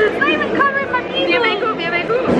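Speech only: women talking close to the microphone, with some chatter behind.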